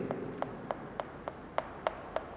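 Chalk on a chalkboard, tapping out a row of short hatch strokes: a quick, regular ticking of about three strokes a second.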